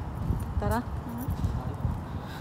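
Low, uneven thumping and rumble from people walking with a handheld phone, with a short spoken word partway through.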